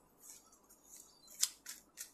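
Tarot cards being handled: a few faint, crisp snaps and slides as cards are pulled from the deck, the sharpest about one and a half seconds in.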